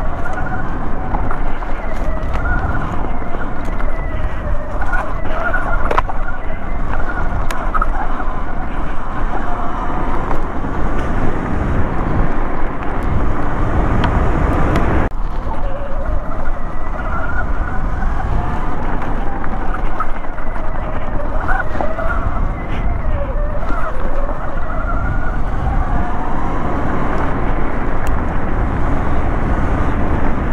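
Sur-Ron Light Bee X electric dirt bike on the move: the motor and chain drive whine, rising and falling in pitch as the throttle comes on and off, over a steady rumble of wind and tyre noise.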